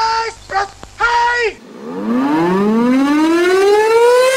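An air-raid siren sound effect winding up, its wail rising slowly and steadily in pitch from about two seconds in. Before it, two short held pitched notes end, the second sliding down at its close.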